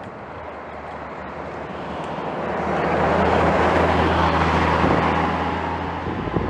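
A road vehicle's engine drones steadily under a rushing noise, growing louder over the first three seconds and then holding.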